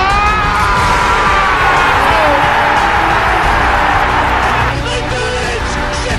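A commentator's long, drawn-out shout of "Aguero!" rising in pitch, over a stadium crowd erupting in a roar at a goal, with background music underneath. The crowd roar drops away about five seconds in, leaving the music.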